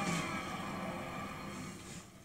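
Cartoon explosion sound effect: a blast right at the start, with a tone sliding downward, that fades away over about two seconds.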